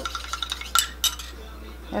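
A stirring rod clinking against the sides of a small clear beaker as a diluted shampoo sample is stirred to mix it before its pH is tested. There are several sharp clicks in the first second, then fainter ticks.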